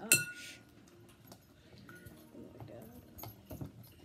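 A glass mixing bowl is struck once with a sharp clink that rings briefly, about a tenth of a second in. Small scattered clicks of stirring in the bowl follow.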